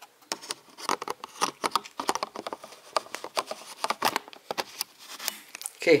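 A Samyang lens being fitted and screwed onto a camera mount by hand, giving a string of irregular small clicks and scrapes.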